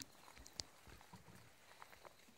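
Near silence, with faint footsteps about one every half second.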